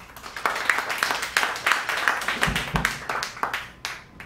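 A small audience clapping, starting about half a second in and dying away just before the end, with two low thumps about two and a half seconds in.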